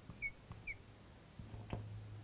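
Felt-tip marker squeaking on a glass lightboard: a few short, high chirps in the first second, then faint taps, with a low hum setting in about halfway.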